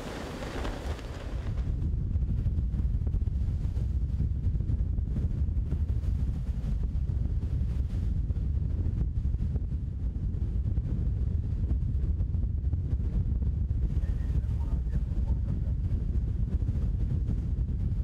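Wind buffeting the microphone on deck at sea: a heavy, gusty low rumble that sets in about a second and a half in and covers a steady hiss.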